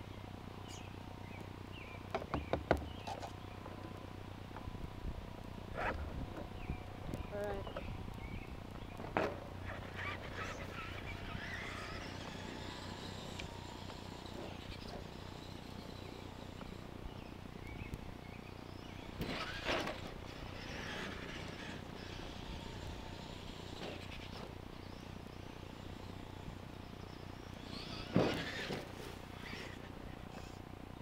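Traxxas E-Maxx electric RC monster truck running on a dirt track, mostly distant and faint. Its motor and tyre noise swells twice, about two-thirds of the way in and loudest near the end as it comes close.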